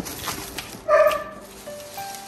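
Plastic shopping bag rustling and crinkling as a hand rummages inside it, with a single short, high yelp about a second in, the loudest sound here. Background music with rising notes comes in near the end.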